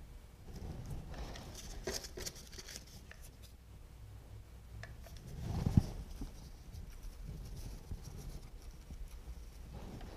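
Quiet handling noises as silk leaves are pressed onto the wire around a vase with a hot glue gun: faint rustling of foliage and small clicks. One dull thump stands out about five and a half seconds in.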